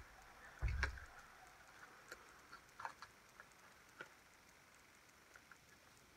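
Faint handling noises at a fly-tying vise: a soft thump under a second in, then a few scattered light clicks and taps, most of them around two to four seconds in.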